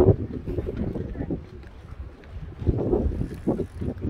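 Wind buffeting the microphone in an uneven low rumble, with indistinct voices of people nearby about three seconds in.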